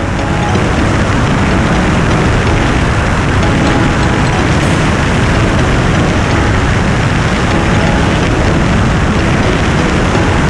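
Extra 330LX's six-cylinder Lycoming engine and propeller running steadily on final approach, under heavy wind noise on the microphone.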